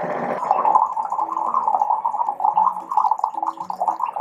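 Hot water pouring from a Toshiba TWP-TSR75SHK reverse-osmosis countertop water dispenser into a glass, with a steady gurgling from the machine as it filters water.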